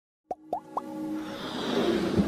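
Three quick cartoon pop sound effects for an animated intro, each a short upward blip, about a quarter second apart. They are followed by a musical swell that builds steadily in loudness.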